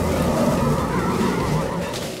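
Cartoon sound effect: a loud, dense rumbling wash with wavering, warbling tones on top as the giant tree changes shape, fading a little toward the end.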